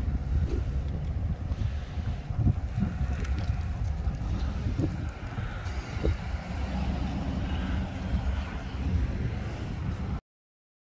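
Wind buffeting the microphone in uneven gusts, over a black GMC SUV's engine running as the SUV turns and pulls slowly away.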